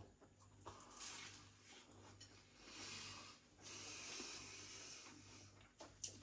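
Faint sounds of a man chewing a mouthful of sausage roll and breathing out through his nose in a few soft breaths, over a low steady room hum.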